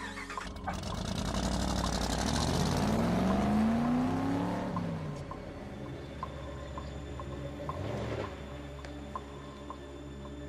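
Pickup truck engine accelerating away, rising in pitch and loudest about three to four seconds in before fading, with a smaller vehicle pass near the eighth second. A quiet music bed with a steady ticking beat runs underneath.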